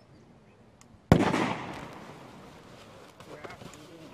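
A fragmentation hand grenade detonating about a second in: one sharp blast that dies away over about a second.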